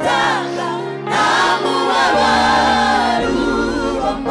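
Live gospel praise singing: a group of singers with microphones, voices together over a steady low bass line that changes note twice.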